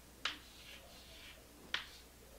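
Chalk writing on a chalkboard: two sharp taps as the chalk strikes the board, about a second and a half apart, with a faint scratching between them.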